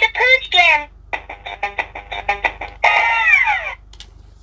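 Electronic quick-push pop-it game toy playing its sound effects: warbling electronic tones, then a rapid run of beeps about a second in, then a falling tone near the end, typical of the game ending as its button lights go out.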